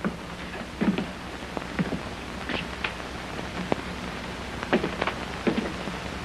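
Steady, even hiss with a few faint, short knocks scattered through it.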